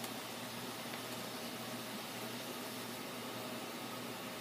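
Steady low hiss of room noise with a faint hum underneath, even throughout. No distinct page rustle or handling sound stands out.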